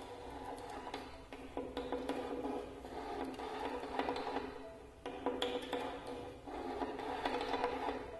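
Amplified prepared violin played with extended techniques: grainy scraping noise full of clicks, in spells of one to two seconds with short breaks between them.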